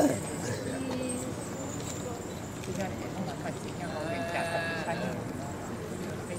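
Background crowd chatter: many indistinct voices talking at once, with one higher voice standing out for about a second around four seconds in.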